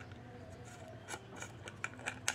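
Light handling clicks and rustles as fingers grip and turn an abrasive flap disc and its metal hub nut, with a few sharp ticks in the second half.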